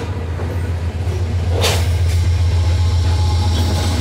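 Freight train of covered hopper cars rolling over a short steel bridge, with a steady low diesel drone that grows louder as a mid-train diesel locomotive (a distributed power unit) comes up. There is one sharp bang about a second and a half in.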